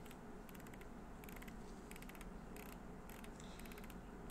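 Computer mouse scroll wheel ticking faintly in short, irregular runs of clicks.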